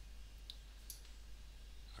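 Two faint computer mouse clicks, about half a second and a second in, over a low steady hum.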